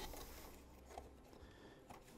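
Near silence: room tone with faint handling of a plastic old-work mounting ring against drywall, a light click at the start and a fainter tick about a second in.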